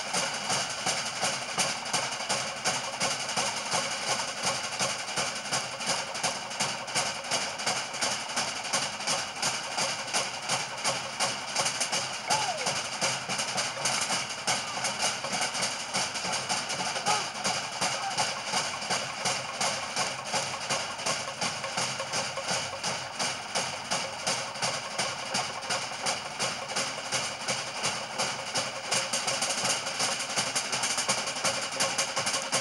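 Drums playing a fast, steady beat, a few strikes a second, accompanying a fire knife dance.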